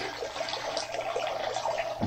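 Steady trickling and splashing of water, a filter's return stream running into the surface of a large tank.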